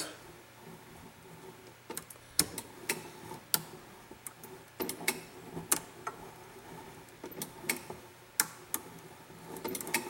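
Homemade hand-turned coil winder winding 15-gauge copper magnet wire onto a coil form. It gives faint, irregular clicks and ticks, roughly one or two a second, as the form turns.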